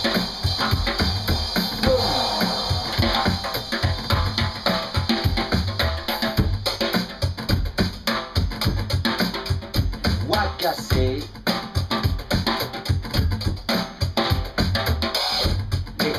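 A drum kit played with sticks in a fast, dense run of drum and cymbal hits.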